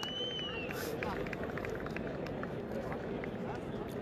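Faint crowd noise at an outdoor cricket ground: distant voices of players and spectators with scattered clicks, and a thin high whistle that rises and falls in the first second.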